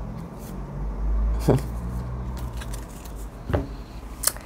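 A low, steady rumble like a motor vehicle passing, swelling about a second in and then easing, with a few light clicks of cards being handled.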